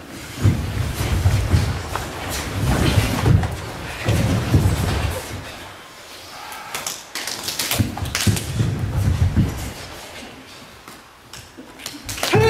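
A group of karateka performing kata Saifa in unison: bare feet stepping and stamping on a wooden floor. The thuds come in repeated bursts of about a second each, with short pauses between them.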